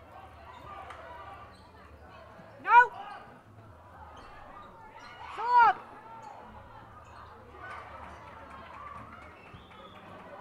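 Basketball sneakers squeaking sharply on the court floor twice, about three seconds apart, each squeak rising and falling in pitch, over a steady crowd murmur in the gym.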